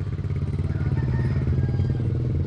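An engine running steadily at idle, a low, even drone.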